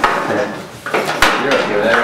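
Paper being handled and leafed through on a table close to the microphone, rustling, with a few sharp knocks, the clearest about a second in.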